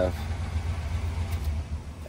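1979 Chevrolet Impala's V8 idling with a low, steady sound through its newly replaced exhaust, fading near the end.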